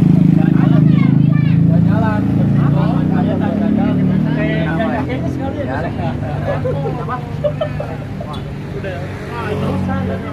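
A motor vehicle's engine running close by, a low steady drone that fades away about halfway through, under the chatter of several voices.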